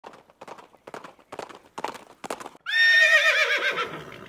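Horse hooves clip-clopping at an even walk, six hoof beats a little under half a second apart, then a horse whinnying, a loud wavering call that falls in pitch and fades out.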